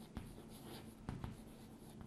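Chalk writing on a chalkboard: faint scratching with a few light taps as the words are written, the clearest just after the start and about a second in.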